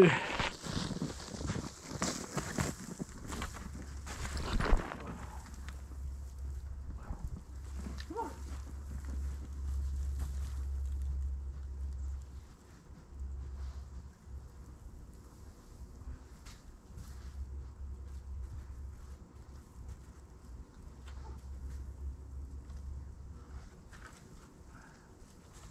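Camera being bedded into snow with footsteps crunching close by for the first few seconds, then fainter footsteps in snow moving away. An on-and-off low rumble runs underneath.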